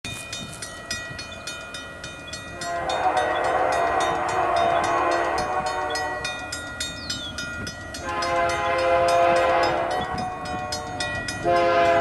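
Canadian Pacific locomotive's multi-note air horn sounding two long blasts and a short one, the grade-crossing warning, as the train approaches. Under it, the level-crossing bell rings steadily at about four strikes a second.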